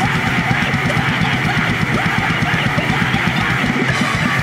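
Fast hardcore punk band playing: loud distorted electric guitars and bass over rapid, driving drumming.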